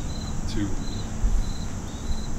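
Cricket chirping steadily, about two short high chirps a second.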